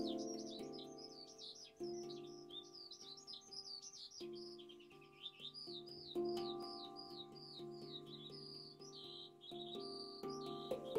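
Handpan played softly by hand, a few gentle strikes with each note left to ring and fade. Over it, a songbird sings a quick, continuous run of short high chirps.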